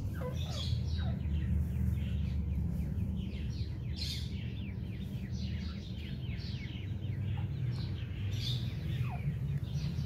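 Grey partridge chicks peeping: a dense run of short, high, falling chirps, several a second, with a steady low hum underneath.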